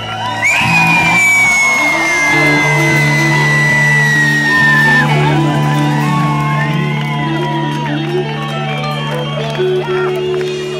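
A live rock band holds out a sustained chord on electric guitar and bass while the crowd whoops and shouts. A long high whistle starts about half a second in and sinks slowly in pitch for about four and a half seconds.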